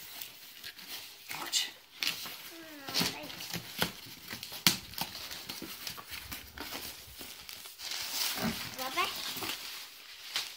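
Cardboard box flaps and packing paper rustling and crinkling in short bursts as a small child digs a present out of a box, with scattered knocks of cardboard. Twice, about three seconds in and again near the end, there is a brief wordless vocal sound that slides up and down in pitch.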